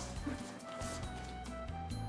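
Background music: soft held notes over a slow bass line that changes pitch a few times.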